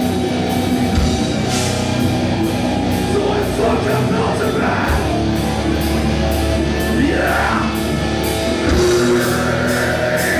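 A live rock band playing: electric guitars and a drum kit, with cymbals struck steadily a couple of times a second. A sweeping glide in pitch rises about seven seconds in.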